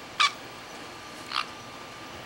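Two short, high chirps from a pet parrot, about a second apart, the first louder.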